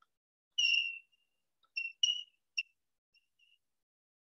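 Chalk squeaking against a chalkboard while writing: a string of short, high-pitched squeals, the longest about half a second in, then several brief ones and a faint one past the three-second mark.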